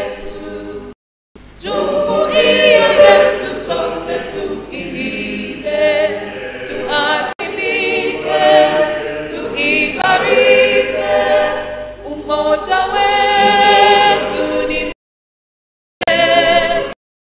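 A choir singing an anthem. The sound cuts out briefly about a second in and again near the end.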